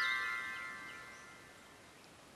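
Ringing tail of a short chime-like music sting: several high bell-like tones sounding together fade away over about a second and a half, leaving faint background noise.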